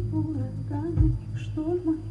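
Live band music with a woman singing: a deep kick-and-bass beat lands about once a second under her wavering sung melody.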